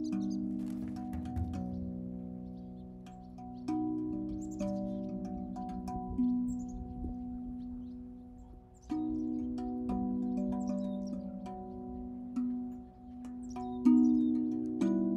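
Handpan played with the hands: single notes struck and left to ring, overlapping into a slow, meditative melody, with a brief lull about eight seconds in before the notes resume.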